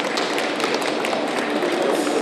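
Scattered applause from a small group of people, a dense patter of claps over a low murmur of voices.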